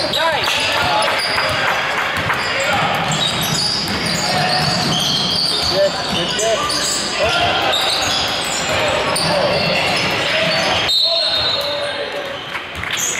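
Basketball game in a gym: a ball dribbled on the hardwood floor and players' and spectators' voices calling out, echoing in the large hall.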